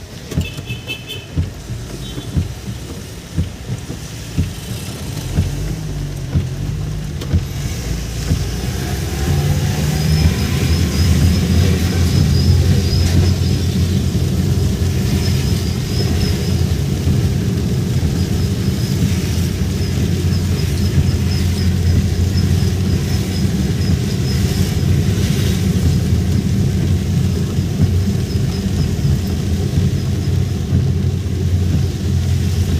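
Car engine and road rumble heard from inside the cabin while driving in rain. It grows louder over the first ten seconds, with a few sharp knocks early on, then runs steadily.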